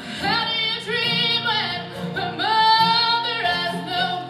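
A woman singing a slow melody with long held, wavering notes over a strummed acoustic guitar; one long note is held through the second half.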